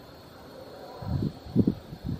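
Wind buffeting the microphone in irregular low gusts, starting about a second in after a quieter moment.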